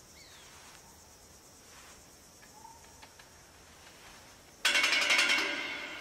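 Faint outdoor ambience of insects with a couple of brief bird chirps. About four and a half seconds in, a sudden loud sound cuts in and then fades away over a second or two.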